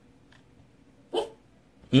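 A dog barks sharply about a second in, and a second short burst, a bark or a man's brief reply, comes at the very end.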